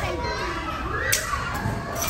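Background hubbub of children playing and talking in a large indoor play area, with one sharp click about a second in.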